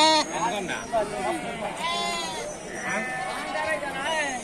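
Sheep in a crowded flock bleating several times, with one long bleat about halfway through.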